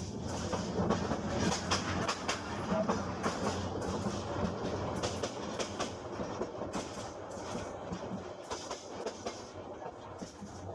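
Dubbed-in train sound effect: a train running on rails with irregular clicking and clacking of wheels over rail joints over a steady rumble, gradually getting quieter toward the end.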